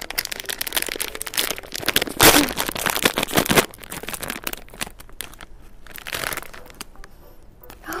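Plastic snack bag crinkling as it is handled and pulled open, with the loudest tearing rustle about two seconds in and quieter crinkling after.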